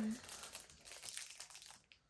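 Packaging crinkling and rustling as items are handled and unwrapped, with a brief voice sound right at the start.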